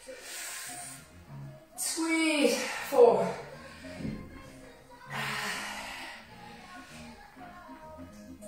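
Background music running under a woman's heavy, forceful exhales as she lifts dumbbells, one breath near the start and another about five seconds in. A louder voiced sound, a strained groan or a vocal in the music, comes about two seconds in.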